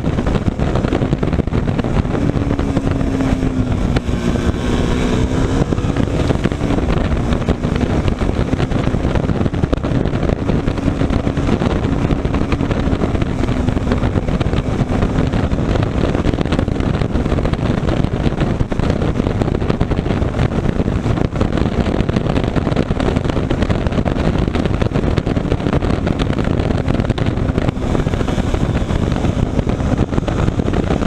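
KTM motorcycle engine running steadily at around 100 km/h, heard under heavy wind rush on the microphone. The engine note wavers slightly a few seconds in.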